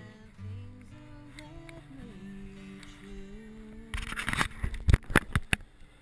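Background music with guitar. Near the end, several loud, sharp noises cut across it.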